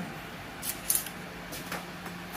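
Steel tape measure handled and repositioned against a bicycle frame: three or so short, sharp rasping sounds over a faint background.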